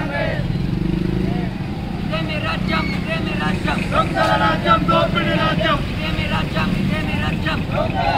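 Protesters' voices shouting from about two seconds in, over a steady low rumble of a bus engine idling.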